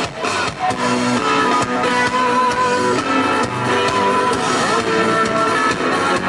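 Live band playing an instrumental passage: electric guitar over electric bass guitar, with a steady beat.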